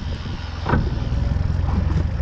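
Outboard motor idling in neutral under heavy wind rumble on the microphone, with a brief knock about three quarters of a second in.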